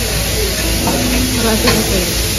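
Steady sizzling hiss of meat frying on a restaurant grill station, with a voice talking low in the background and a few faint clinks.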